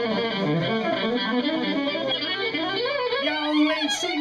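Fiddle solo: a bowed violin played through the PA, its notes sliding and bending up and down.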